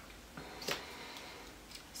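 A few sharp plastic clicks from handling a mascara tube: two close together about half a second in, the second the loudest, then fainter ticks near the end.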